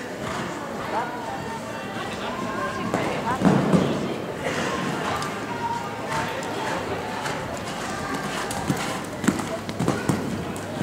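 Horse cantering on a sand arena floor, its hoofbeats sharper near the end as it passes close, with a louder dull thud about three and a half seconds in; people's voices carry through the hall throughout.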